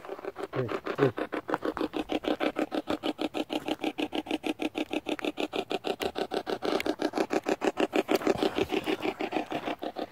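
Spirit box sweeping through radio stations: rapid, even chopped static and radio fragments, about eight pulses a second.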